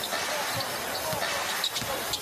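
A basketball being dribbled on a hardwood arena court, a few bounces over the steady murmur of the arena crowd.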